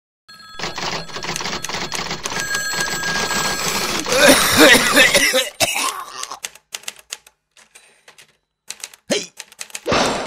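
Rapid clatter of typing on keyboards. It thins to scattered keystrokes about halfway through and picks up densely again near the end. A loud voice sound, such as a cough, is heard about four seconds in.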